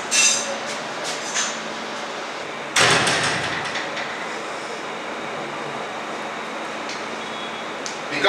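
A wooden door bangs shut about three seconds in, loud, with a short fading ring. Before it come a few light clicks and knocks of the door being handled.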